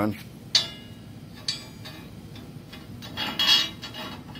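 A steel threaded stud clinking against a plasma-cut steel plate as it is set into a hole, with a sharp ringing clink about half a second in, another about a second and a half in, and a louder cluster of metal clinks and rattle a little after three seconds in.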